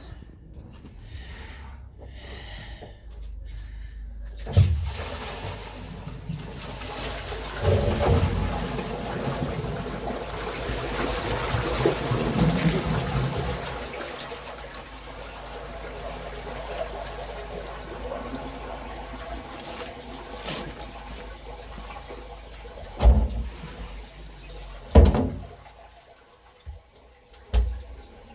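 Waste water from a toilet flush gushing out of the soil pipe into an open drain inspection chamber. It builds about four seconds in, is strongest around the middle, then eases off. Two sharp knocks sound near the end.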